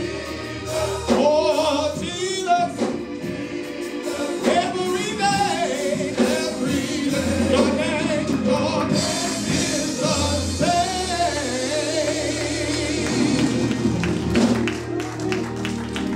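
Male gospel vocal group singing in harmony, with held notes and vibrato, over instrumental backing and a steady bass line. Hand claps join near the end.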